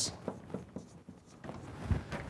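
Marker pen writing on a whiteboard in short strokes, with a brief pause partway through and a soft low thump near the end.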